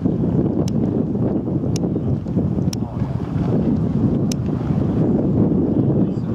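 Wind buffeting the microphone, a loud, continuous gusty rumble. A few sharp clicks sound about a second apart over it.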